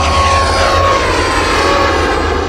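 Jet-engine-style rushing sound effect of a rocket-propelled cartoon car flying past. It swells loud, with two tones sliding slowly downward, over a steady low rumble.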